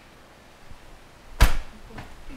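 A single sharp knock or clap about a second and a half in, over quiet room tone.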